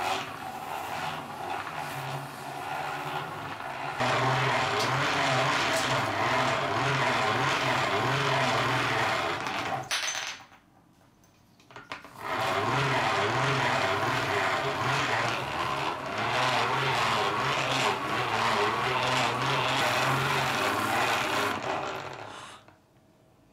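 Hand-cranked bench grinder whirring as it is turned, with a small metal knife part rubbed against its spinning buffing wheel. The sound is quieter for the first few seconds, grows louder, stops for about a second and a half near the middle, then starts again and runs until just before the end.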